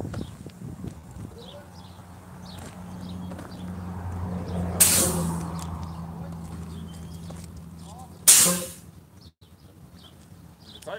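Diesel semi-truck engine running with a steady low hum that swells through the middle, broken by two short sharp bursts of air hiss about five and eight seconds in, the second the loudest, typical of a truck's air brakes; the hum drops away just after the second hiss.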